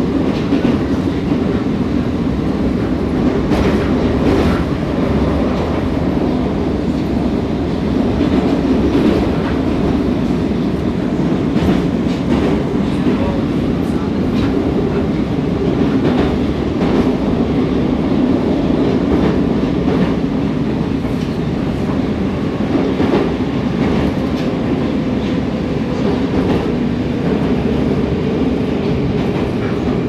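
Moscow Metro 81-760/761 'Oka' train car running steadily at speed, heard from inside the car: a loud, even rumble of wheels and running gear with irregular sharp clicks from the wheels passing over rail joints.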